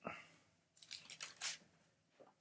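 Faint, short clicks and rustles, a few of them clustered between about three-quarters of a second and a second and a half in.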